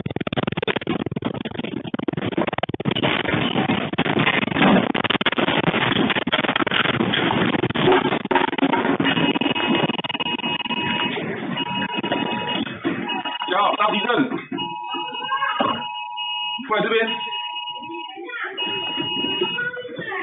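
A room's contents rattling and clattering loudly and continuously as the building shakes in a strong earthquake. About halfway in, an electronic alarm starts beeping in a repeating on-off pattern of two steady tones, one high and one lower, as the shaking dies down.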